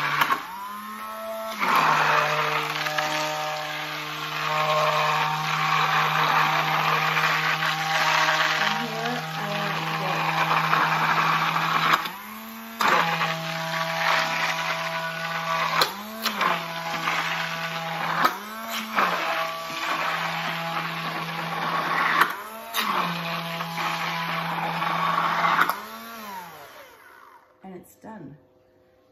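Immersion (stick) blender motor running in a jar of egg, vinegar and oil, emulsifying it into mayonnaise. Its pitch briefly rises and drops back about six times, and it stops near the end.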